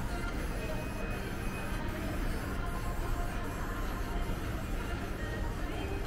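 Shopping mall ambience: background music with indistinct chatter from people nearby, steady throughout.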